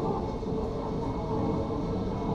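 Steady rumble of a dark-ride car running along its rail track.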